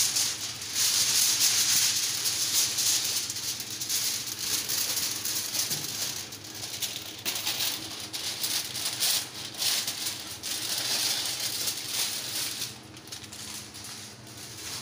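Aluminium foil crinkling and rustling as it is crumpled and folded by hand around a piece of meat. The crackling comes in irregular bursts and dies down near the end.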